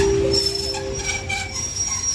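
Thai passenger train coaches rolling slowly alongside the platform as the train brakes to a stop: a low rumble under a steady squeal, with a lower squealing tone that fades near the end and a thin high whistle above it.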